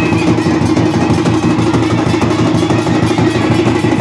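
Live folk drumming on large barrel drums: a loud, fast, dense beat that keeps going without a break.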